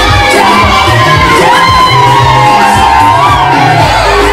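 Loud music with a repeating bass beat, a crowd of women singing along and cheering over it, with one long high voice held through the middle.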